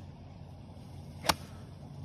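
A golf iron striking the ball once in a full swing, a single sharp click about a second and a quarter in, over a low steady hum.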